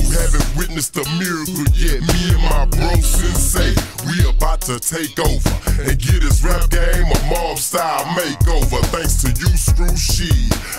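Chopped and screwed Houston hip hop: a slowed-down, pitched-down rap vocal over a heavy bass line and drums.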